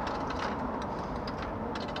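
Capsule-toy (gachapon) vending machine being worked by hand: a scatter of sharp, irregular mechanical clicks from its coin slot and ratcheting knob, over a steady hum of street noise.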